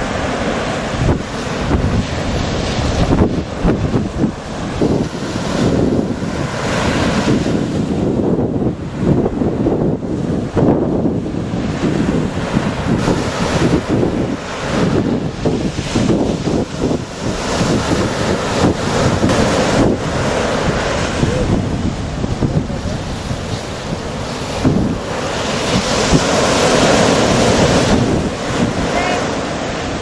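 Wind buffeting the microphone over surf breaking and washing up the beach, a rough, uneven rush that rises and falls throughout.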